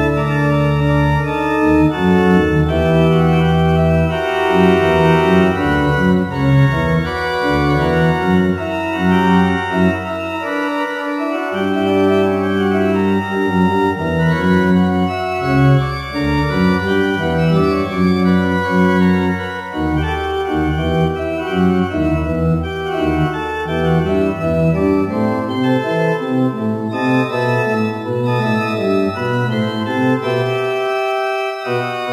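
Organ music played with a downloaded sampled organ sound: several sustained voices moving over a held bass line. The bass drops out briefly about eleven seconds in and falls away again near the end.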